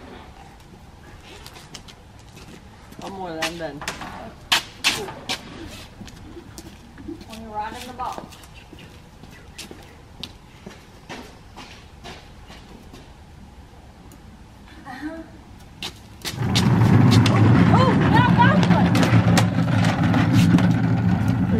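Scattered light clicks and faint voices, then near the end a vehicle engine starts running loudly with a steady low hum.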